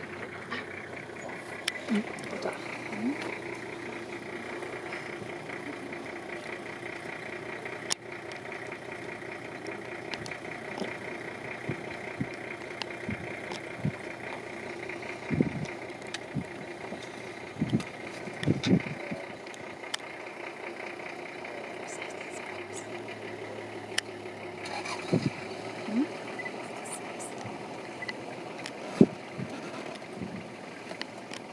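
A vehicle engine idling steadily, with scattered clicks and knocks and a few brief, low voices.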